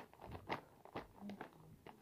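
A few faint, short crinkles and taps of a clear plastic bag being handled.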